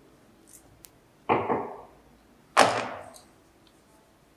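Side cutters snipping the small tabs off a thin metal puzzle part: two sharp snaps, about a second in and again a second later, each with a short ringing tail from the sheet metal.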